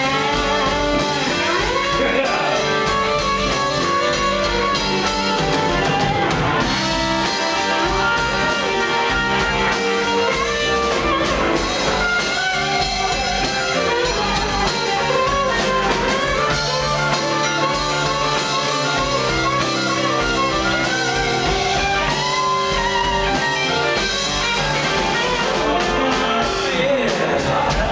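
Live rock band playing an instrumental passage led by electric guitar, with bass guitar and drum kit, heard from the audience.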